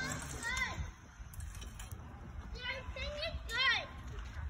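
Children's voices in the background: a few short, high-pitched calls and cries, the loudest near the end, over a low rumble.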